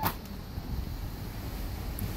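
The latch of a cruise-ship cabin's sliding balcony door clicks as it is opened, then a steady low rush of wind and ship noise comes in through the open doorway.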